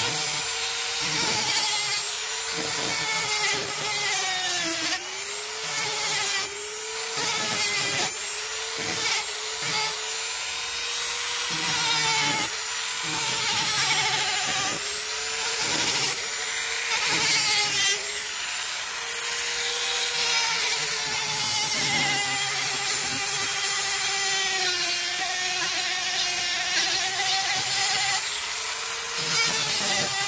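Flexible-shaft rotary tool running with a small sanding disc on carved wood: a steady motor whine that keeps dipping and recovering in pitch as the disc bears on the wood, over the rasping hiss of the sanding.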